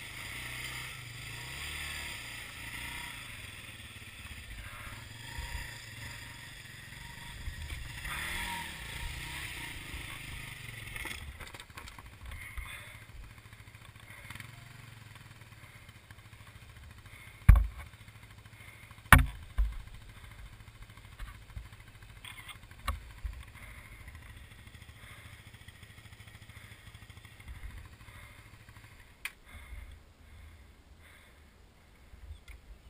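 Dirt-bike engine running at low revs down a rocky trail, louder in the first third and then quieter. Several sharp knocks come about halfway through and after, the two loudest about a second and a half apart.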